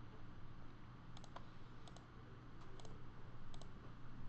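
Computer mouse clicks: four quick double ticks, each a button press and release, less than a second apart, over a faint steady low hum.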